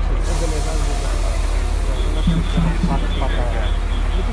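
Parked double-decker coach bus idling with a steady low hum, and a steady hiss of air from its pneumatic system that starts suddenly about a quarter second in. Voices chatter faintly under it.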